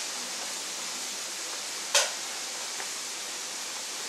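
Steady background hiss, with one short sharp click about halfway through.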